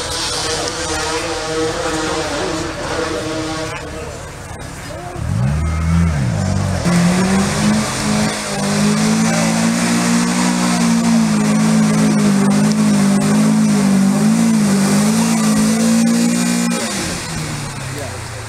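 People's voices at first, then from about five seconds in a car engine revs up under load and is held at high revs, its pitch wavering, as the car climbs a steep muddy trial hill. The engine note drops away about a second before the end.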